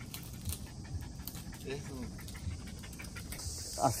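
A small dog panting. Near the end a steady high insect buzz comes in.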